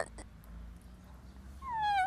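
A boy crying: after a quiet moment, a short falling wail comes near the end.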